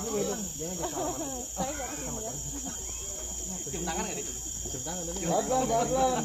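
A steady high-pitched insect drone runs throughout, with people's voices talking underneath.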